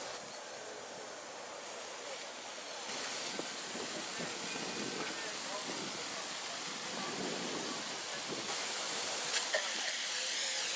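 Steady hiss of water jetting from a hose onto the paved quay, a little louder from about three seconds in.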